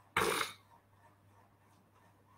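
A man clears his throat once, briefly, just after the start, followed by a faint steady low hum.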